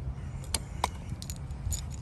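A few light metallic clicks and clinks from handling the removed gate lock and its steel bolts, over a steady low rumble.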